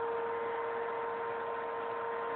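Vacuum cleaner running steadily: an even rushing hum with a steady whine.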